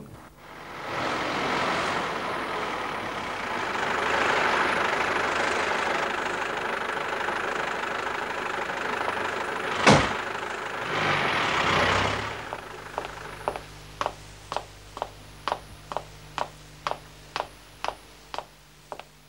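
A taxi's engine running amid street noise, then one sharp car-door slam about ten seconds in and the car pulling away. It is followed by hard-soled footsteps, about two steps a second.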